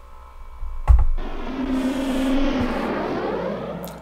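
An added sound effect: a thump about a second in, then a swirling, whooshing noise for about three seconds that stops just before the end.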